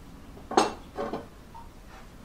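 A ceramic plate with a cake on it being set down on a wooden tray: two knocks with a brief clink, the first and loudest about half a second in.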